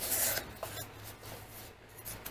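Cardboard rubbing and scraping against cardboard as a bottle carrier is slid out of a shipping box: a scrape in the first half-second, then softer rustling that fades.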